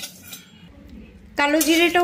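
Metal spatula faintly scraping and stirring nigella seeds and dried red chillies around a dry kadai. A woman starts speaking about two-thirds of the way through.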